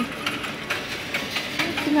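Clear cellophane sleeves around potted orchids crinkling and rustling as they are handled, in short irregular crackles over the steady background noise of a busy shop. A woman's voice starts near the end.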